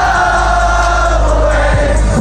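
Loud live hip-hop music over a festival sound system with heavy bass and one long sung note held at a steady pitch, with many voices in the crowd singing along.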